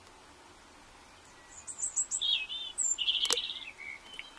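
A songbird singing: a quick run of high chirps and warbled notes begins about one and a half seconds in, after a near-silent start. One sharp click sounds a little after three seconds in.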